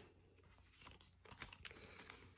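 Near silence, with faint crinkling and a few light ticks from a clear plastic binder pocket and paper sheets being handled.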